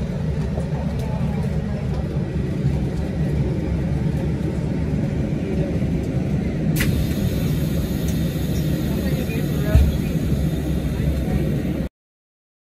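Steady low engine rumble heard from inside a vehicle, behind glass, with muffled voices. There is a sharp click about seven seconds in and a thump near ten seconds, and the sound cuts off suddenly just before the end.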